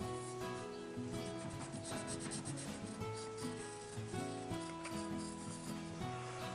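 Pencil scratching on paper in short, repeated strokes, sketching small fold lines, over soft background music.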